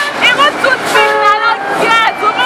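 A vehicle horn sounds once, a steady held toot of about half a second, about a second in, among a woman's excited talking.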